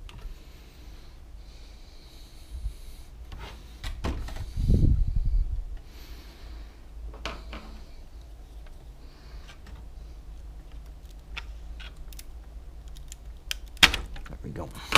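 Scattered clicks and taps of hands handling an iMac G3's metal-framed motherboard sled and its circuit boards, with a heavier knock and rubbing about five seconds in as the assembly is stood up on its end.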